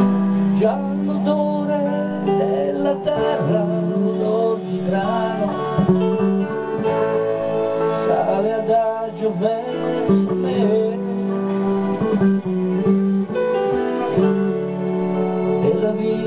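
A band playing an instrumental passage: acoustic guitar under held chords, with a gliding, wavering lead melody on top.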